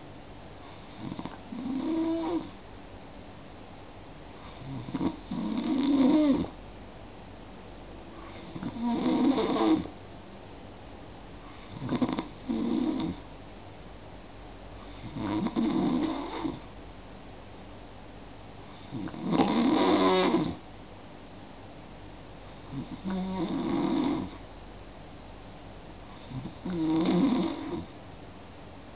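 Steady, regular snoring: eight snores, one about every three and a half seconds, each lasting one to two seconds. Each snore is a low, pitched rasp with a hiss on top.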